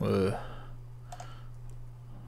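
A man's voice trails off in the first moment, then a few faint computer clicks come about a second in, over a steady low hum.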